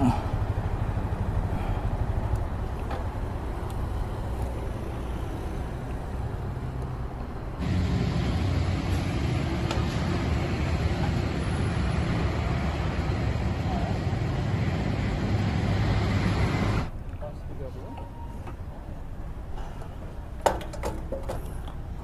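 Steady engine and road-traffic noise with a low hum. The sound changes abruptly about a third of the way in, turning louder and duller, then drops to a quieter hum for the last few seconds.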